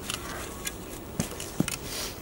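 A flat-ended spade cutting into mulch and soil, with a few short crunches and scrapes of the blade among dry leaves.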